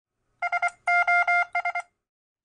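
Morse code beeps at one steady pitch spelling SOS: three short tones, three longer tones, then three short tones.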